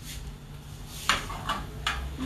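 Three short knocks of kitchenware in the second half, over a steady low hum.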